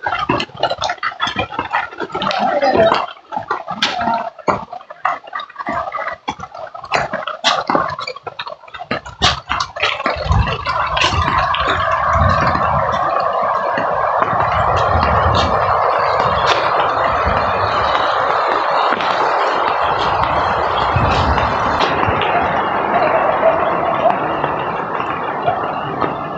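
Irregular clicks and knocks for the first ten seconds or so, then the steady rushing of a swollen, muddy floodwater stream that holds to the end.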